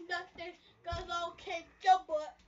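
A child singing in short phrases, with a low thump about a second in.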